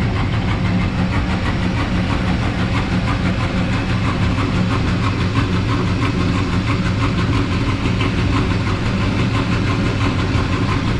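A Chevrolet pickup truck's engine idling steadily.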